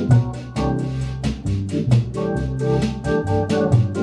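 Hammond organ played through Leslie speakers: sustained, changing jazz chords with a bass line in a bossa nova groove. A steady light percussion pattern of about four to five hits a second runs under it.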